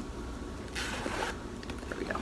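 Zipper on a small black knit top being pulled shut in one quick run of about half a second, near the middle, with a few faint clicks of the slider around it.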